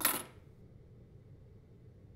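A single sharp metallic clink right at the start, ringing off within about half a second: a small metal object set down or knocked on a hard surface.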